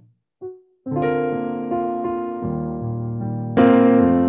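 Electronic keyboard played with a piano sound: after a moment of silence, sustained chords ring out from about a second in, change about two and a half seconds in, and a louder fresh chord is struck near the end.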